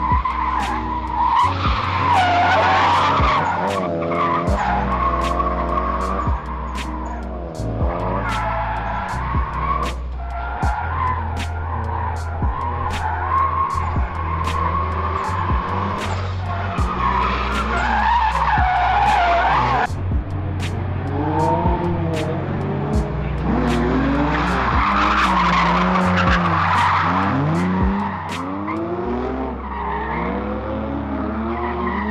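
A drift car's engine revving up and down over and over while its tyres screech through long slides. Music with a steady beat and a bass line plays underneath.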